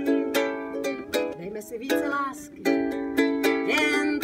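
A woman singing her own song to a ukulele strummed in a steady rhythm.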